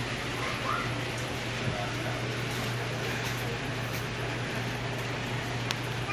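Steady low hum over an even background noise: the room tone of a small supermarket aisle, with a faint short rising sound about a second in.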